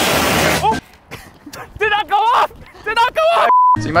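A handheld long tube device fires, its jet of smoke discharging in a loud rushing blast that lasts under a second. Excited voices follow, and near the end a single short censor bleep.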